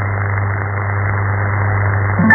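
Shortwave AM radio signal demodulated by a software-defined radio during a gap in the programme: steady hiss and static under an unmodulated carrier, with a constant low hum.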